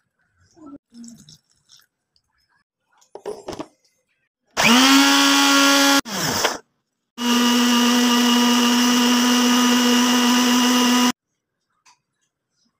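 Anex electric blender grinding green chillies and fresh herbs. The motor whines up to a steady pitch and runs for about a second and a half, then stops. A short burst follows, then a steady run of about four seconds that cuts off suddenly.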